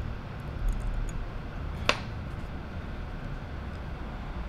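Steady low room hum with a single sharp click about halfway through.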